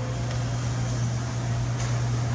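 Steady low machine hum with a constant haze of fan and air noise from the heated rotisserie-chicken display and kitchen equipment.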